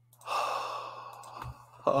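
A man's long, breathy sigh of relief, a forceful exhale that fades over about a second, followed near the end by a short voiced "uh".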